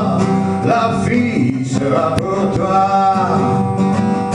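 Acoustic guitar strummed in a steady rhythm, with a man singing into a microphone over it.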